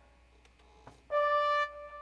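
A single steady instrument note, held for about half a second and then cut off short, after about a second of near silence broken by a faint click.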